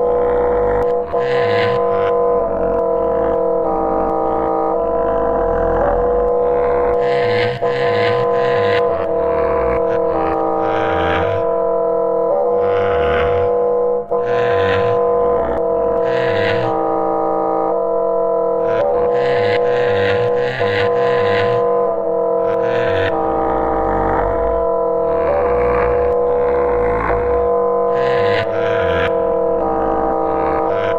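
Live-coded electroacoustic music from SuperCollider: a sustained drone chord of steady tones, with irregular bursts of bright hiss and choppy low pulses over it. It plays continuously and at an even level.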